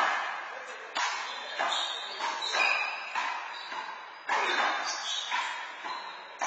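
A handball rally: a rubber ball slapped by hand and smacking off the court walls and floor, a string of sharp hits about one or two a second, each ringing out in the hall.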